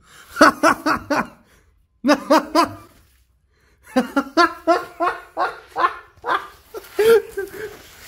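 People laughing hard in quick, rhythmic pulses, in three stretches broken by two short silences, the longer one about three seconds in.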